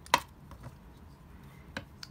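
A single sharp knock of a wooden marionette leg piece against a metal bench vise as it is set into the jaws. A fainter tick follows about half a second later, and another comes near the end.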